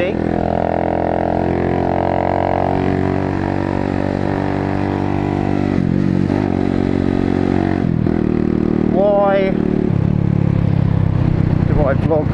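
Engine of a 125cc motorcycle running steadily under way. Its note drops in pitch twice past the middle, then settles lower and louder near the end.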